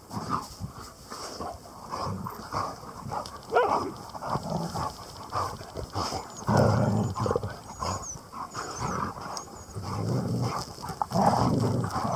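Dogs snuffling and sniffing with their noses pushed into a dug hole in the turf, hunting a mole, in irregular bursts that are loudest about halfway through and again near the end.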